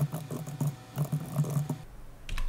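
Fast typing on a computer keyboard: a quick run of keystrokes as a terminal command is entered.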